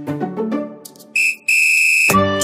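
Background music fading out, then a high whistle-like tone sounding twice at the same pitch: a short note, then a longer, louder held one near the end.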